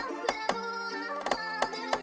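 UK drill beat playing back from FL Studio: a sustained sampled melody with sharp counter-snare hits over it.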